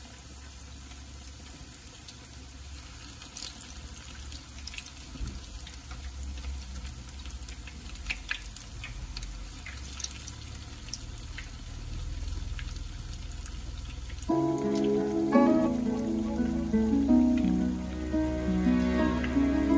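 Zucchini fritters frying in a pan of hot oil: a steady sizzle with scattered small pops. About fourteen seconds in, background music comes in over it and is louder.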